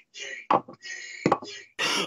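Two sharp knocks, about three-quarters of a second apart, as a drinking glass is handled and set down, over faint muffled sound.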